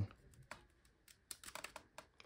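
Faint clicking from a handheld wireless Bluetooth keyboard as it is gripped and turned over, its keys rattling: one click about half a second in, then a quick run of small clicks in the second half.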